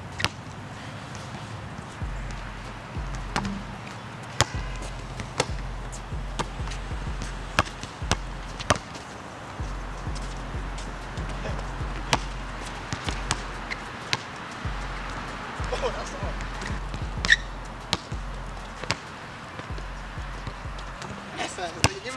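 A basketball bouncing on a hard outdoor court: sharp single bounces, roughly one a second, some close together, over background music with a deep bass line that comes in about two seconds in.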